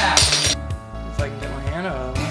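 Background music with a steady beat, a short sharp clink just after the start, and a voice rising and falling in pitch near the start and again near the end.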